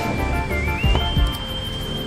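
Background music with a high, whistle-like melody tone that dips and then steps up in pitch about half a second in, over a low recurring beat. A single sharp chop of a cleaver into meat on a wooden block comes about a second in.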